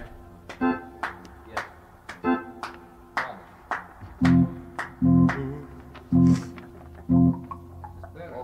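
Session band playing loose snatches of music between takes, with laughter at the start. Sharp percussive hits are scattered through it, and in the second half four heavy low chords land about a second apart.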